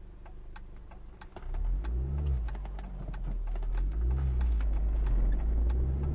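Car engine pulling away from about a second and a half in, its pitch rising and falling twice as it gathers speed, over a steady ticking throughout.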